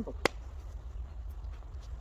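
A single short, sharp impact about a quarter second in, over a low steady rumble.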